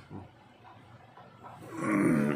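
Low room tone, then near the end a loud, drawn-out vocal sound with a wavering pitch begins, growl- or roar-like.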